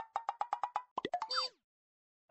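Cartoon-style sound effect: a quick run of about eight pitched plops in under a second, followed by a short falling glide.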